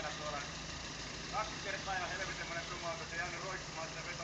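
Compact 4x4's engine running steadily at low revs as the vehicle crawls down a muddy track.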